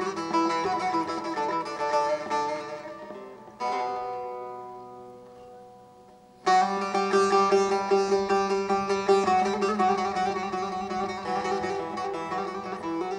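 Bağlama (Turkish long-necked saz) played solo in the free-rhythm instrumental opening of a bozlak. Dense runs of notes give way to a single struck chord, about a third of the way in, that is left to ring and fade. Past the middle the playing breaks in again loudly and runs on busily.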